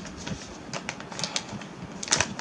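Zipper of a cosmetic pouch being worked open in short tugs: a scatter of small clicks and scrapes from a stiff, difficult zipper.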